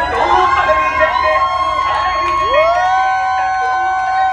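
Siren-like sound effect in playback dance music: several held high tones over a low bass, one swooping up about two and a half seconds in and holding.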